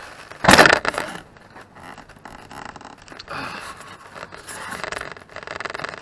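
A pine block glued to foam board with Behr exterior paint being wrenched by hand: a loud rasping scrape about half a second in, then quieter rubbing and creaking from about three seconds in, as the paint bond holds.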